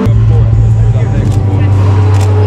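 A loud, steady low motor hum, with people talking faintly behind it.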